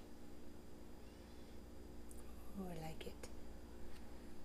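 A faint, brief murmur from a woman's voice, falling in pitch, about two and a half seconds in. A couple of light clicks follow, over a steady low hum.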